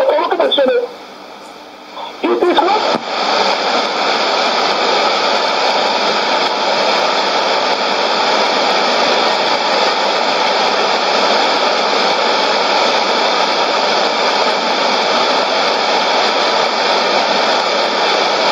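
Sony ICF-2001D shortwave receiver giving a loud, steady hiss of static after a man's voice says a last few words about three seconds in. The station's carrier has dropped off 11600 kHz, so only band noise is left.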